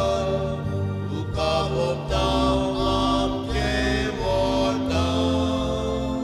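A hymn sung by voices over sustained instrumental accompaniment whose bass notes change in steps.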